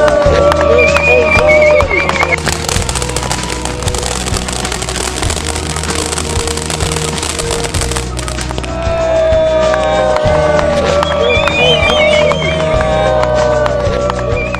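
Music plays throughout. From about two seconds in, a firework set piece gives a dense crackling hiss of burning sparks, which stops suddenly at about eight seconds.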